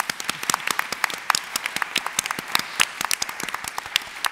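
Audience applauding: many people clapping at a steady level.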